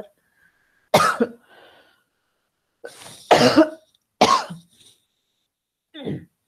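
A woman coughing several times, in short separate coughs with pauses between them.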